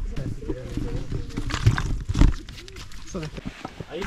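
Indistinct talk from people close by, under a steady low rumble on the microphone, with two sharp thumps about halfway through.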